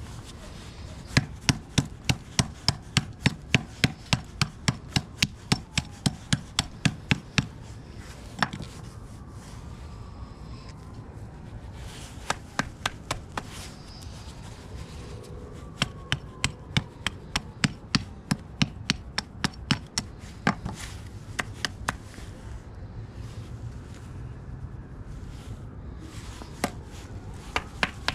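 Hammer blows on a hard encrusted lump resting on a wooden stump, struck to crack it open. A quick run of about three blows a second lasts several seconds, then the strikes come in shorter bursts with pauses between them.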